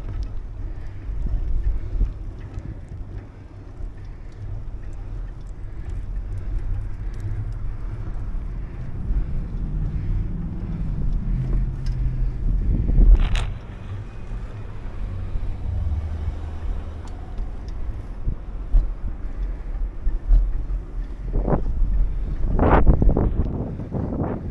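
Wind buffeting the microphone over the low rumble of tyres rolling on pavement while riding. There is a sharp knock about halfway through and a quick run of knocks near the end as the wheels jolt over bumps in the pavement.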